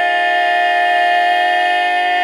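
Women's barbershop quartet singing a cappella, holding one sustained chord steadily in close four-part harmony.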